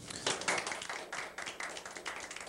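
Applause: many hands clapping quickly and steadily, starting sharply as the music ends.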